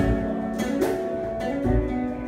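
Acoustic guitar plucking a slow ballad accompaniment, a few notes struck at a time with clear attacks.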